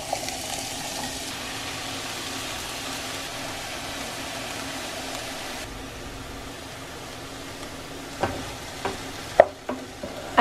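Diced onion and mushrooms sizzling steadily in a hot frying pan, a little quieter after about six seconds, with a few short knocks near the end.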